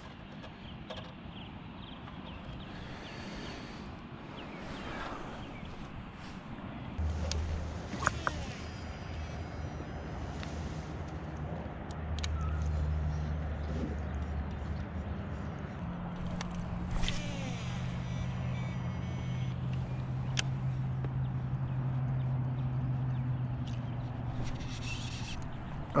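A distant engine drones at a low, steady pitch that steps up about halfway through, under faint open-water ambience. A few sharp clicks stand out over it.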